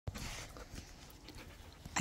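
A dog panting softly.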